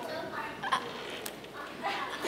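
Scattered brief voices and murmuring, with a couple of light knocks.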